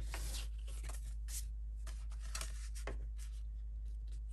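Sheet of scrapbook paper being handled and slid across a cutting mat and notebook: soft, scattered paper brushes and rustles, over a low steady hum.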